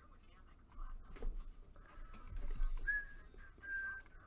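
Light clicking of a computer keyboard and mouse, with a dull low knock or two against the desk. A few faint, short whistled notes come in near the end.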